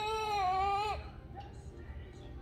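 Baby's upset cry: one long, steady wail that stops about a second in.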